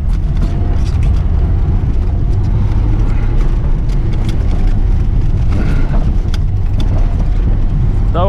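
Lada Zhiguli's four-cylinder engine running hard and its tyres working a snowy, rutted dirt track, heard inside the cabin as a loud, steady low rumble. Scattered sharp clicks and knocks come through from about three to seven seconds in.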